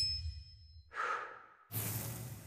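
A woman sighs once, a short breath out about a second in, as the music fades away. Near the end a low steady hum cuts in suddenly.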